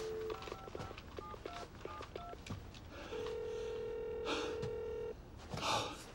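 Touch-tone telephone: a brief dial tone, then a quick run of keypad beeps as a number is dialled. Then the line's ringback tone rings once for about two seconds. Short rustles of movement come in the middle and near the end.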